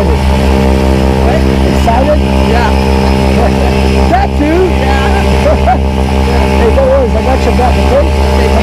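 A loud, steady engine drone that holds the same pitch throughout, with voices and laughter over it.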